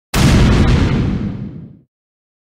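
A cinematic boom sound effect: one sudden, loud hit just after the start that dies away over about a second and a half, the high end fading first.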